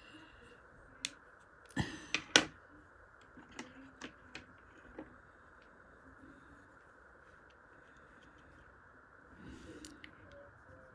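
Small clicks and taps from pens being handled on a table: a few sharp clicks in the first few seconds, the loudest about two and a half seconds in, then faint steady room hiss.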